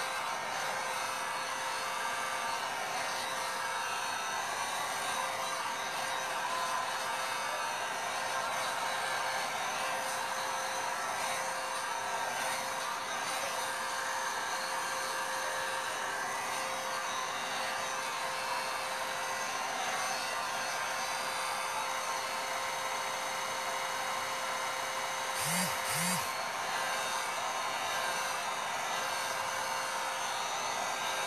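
Hand-held electric dryer blowing steadily on the canvas, a constant hiss with a steady motor whine, drying fresh acrylic paint. Two short low sounds break in near the end.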